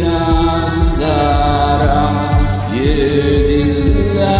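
Hindi film love song cover: long held sung notes, each sliding up into pitch, over a backing track with a steady low beat.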